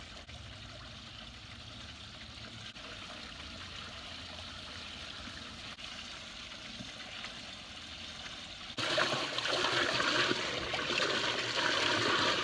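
Water pouring in a sheet from a spillway in a stone pool wall and splashing into the water below, a steady rush. About nine seconds in it is suddenly much louder and closer.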